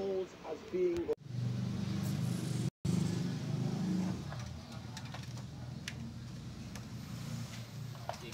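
A brief voice, then a steady low engine drone, like a motor vehicle running nearby, loudest for the first few seconds and slowly fading, cut by a short silent gap a little under three seconds in.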